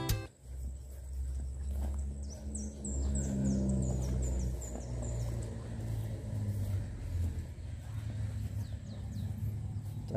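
Outdoor field ambience: a steady low rumble and hum, with a bird giving a quick run of about nine high, downward-sliding chirps a few seconds in, then a few fainter calls.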